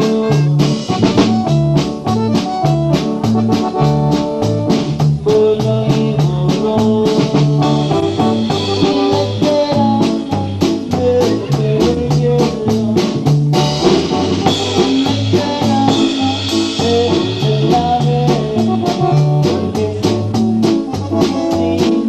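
Live band playing an instrumental passage: electronic keyboards carry the melody over electric bass and a drum kit keeping a steady, even beat.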